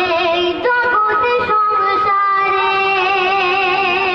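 A boy singing a Bengali gojol (Islamic devotional song) into a microphone, holding long, wavering notes.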